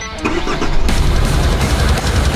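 A Nissan Frontier pickup's diesel engine being started and running, under background music that becomes louder about a second in.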